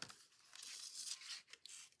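Faint rasp of flax linen book thread being drawn through the sewing holes of paper pages, with light paper rustling.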